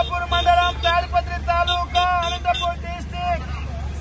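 A man's voice talking with breaks between phrases, over a steady low rumble of street traffic.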